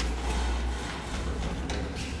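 Old KONE traction elevator car running in its shaft: a low steady rumble, strongest in the first second, with a few light clicks near the end.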